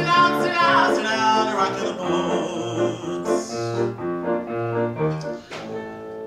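A man singing a show tune over live piano accompaniment, the piano keeping a repeating bass pattern under its chords. The music grows quieter toward the end.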